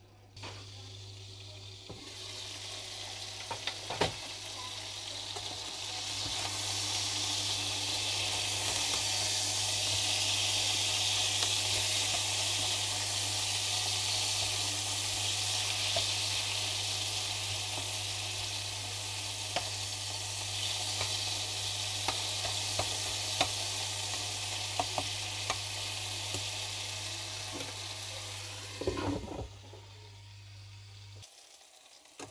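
Diced chicken breast sizzling in hot olive oil in a non-stick wok. The sizzle jumps up as the lid comes off and grows louder, while a slotted spatula stirs the pieces with scattered scrapes and taps against the pan. Near the end the lid clatters back on and the sizzle drops away.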